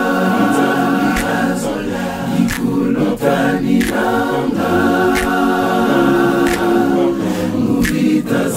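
Male vocal group singing a cappella in harmony, holding long sustained chords that change every second or two, with light clicks at a regular pace keeping time.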